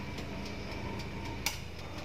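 Countertop electric oven humming steadily, with one sharp click about one and a half seconds in as it is switched off and its door taken in hand.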